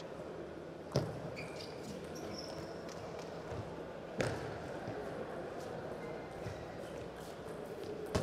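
Table tennis ball strikes: a few sharp clicks of the celluloid-type ball on bats and table, the loudest about a second in and about four seconds in, over the steady background noise of a large hall.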